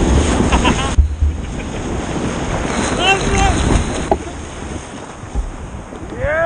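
Rushing whitewater and wind buffeting the microphone as stand-up paddleboards ride a breaking wave; the rush drops off sharply about a second in. Brief calls or a whoop from a rider come about three seconds in.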